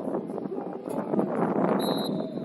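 Wind buffeting the microphone of an outdoor sideline camera, a rough, fluttering rush that grows louder partway through. A short high-pitched tone sounds near the end.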